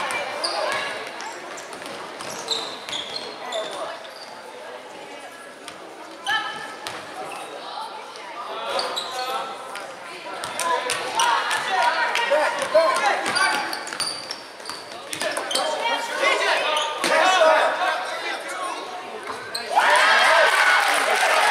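A basketball being dribbled and bounced on a hardwood gym floor during play, with players and spectators shouting, echoing in a large gym.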